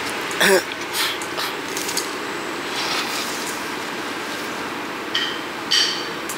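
A person's short laugh about half a second in, then steady background noise with a few faint clicks near the end.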